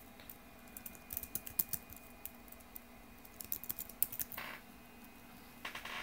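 Keyboard keys typed in irregular runs of soft clicks, densest about a second in and again near the middle, as a password is entered.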